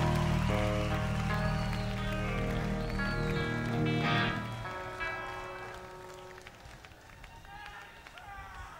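Live rock band's sustained guitar and bass chords ringing out, then fading away about halfway through. Faint crowd noise is left after them.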